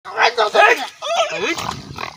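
A man's voice making wordless cries: a quick string of short yelps, then a moan that drops in pitch.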